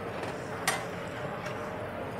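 A utensil clicks once against a plate with a short ring, then clicks again more faintly, over a steady background hum.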